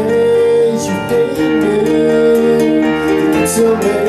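A live band playing amplified: electric guitar, a drum kit with regular cymbal strokes, and a Roland stage piano, with a singing voice over held notes.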